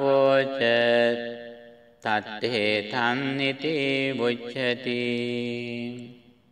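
A man chanting Pali scripture in the Sri Lankan Buddhist recitation style, with long drawn-out held notes. The chant fades out about two seconds in and then resumes.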